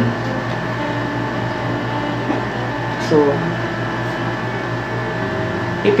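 Steady background hum and hiss with a faint constant high whine, and a man saying one short word about halfway through.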